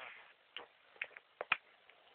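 A handful of light, irregular clicks and taps, about five of them, with a louder noise fading away at the very start.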